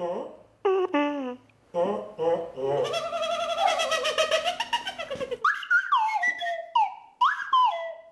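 Short falling pitch slides buzzed on a brass mouthpiece, then a kazoo hummed for a couple of seconds in a rattly, wavering buzz, followed by more high squeaky downward slides.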